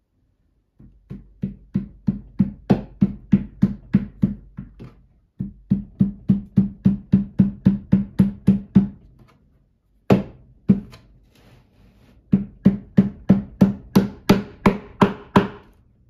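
Hammer tapping a nail-in furniture foot into a nightstand's plastic leg foot: runs of quick, even blows about four a second, each with a short ring. There are three such runs, with two single blows in between around the middle.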